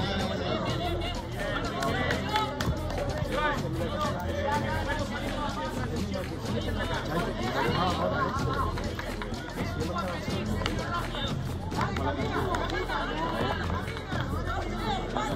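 Several voices talking and calling over one another, with music playing in the background.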